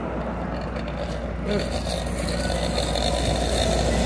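Ice cream truck's engine running steadily, a low rumble under street noise.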